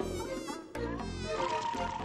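Cartoon bee buzzing sound effect, wavering in pitch, over light background music with pulsing bass notes.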